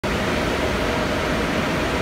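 Box fans mounted over the mining farm's intake screens running: a steady rush of air with a faint hum.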